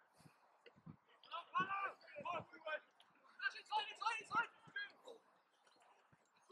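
Distant men's voices shouting calls across an outdoor rugby pitch, in two spells of short shouts with quiet gaps between; no words are clear.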